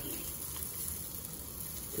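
Sardines and cherry tomatoes sizzling steadily on the hot grill plate of an electric barbecue that has just been switched off.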